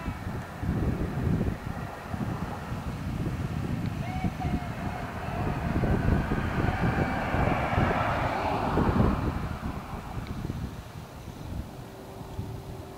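Wind buffeting the microphone in uneven low rumbles, while a vehicle passes on the road, swelling to its loudest a little past the middle and then fading away.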